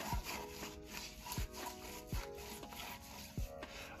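A small can of gloss enamel paint being shaken by hand, rattling and scraping with irregular knocks, with soft background music under it.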